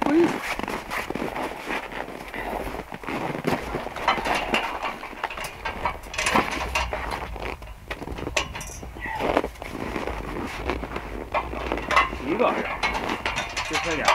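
Steel scaffold frames and locking pins being handled, making scattered short metal clicks and knocks, with a few bits of low talk.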